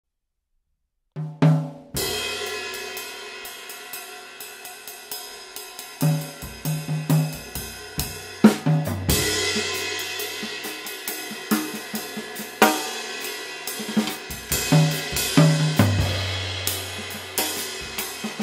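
Sabian HHX 22-inch Evolution ride cymbal (2780 g) struck with a wooden drumstick as part of a drum-kit groove. After about a second of silence and a few drum hits, a loud cymbal stroke about two seconds in starts a long ringing wash. Steady ride strokes follow, with snare, tom and bass drum hits mixed in.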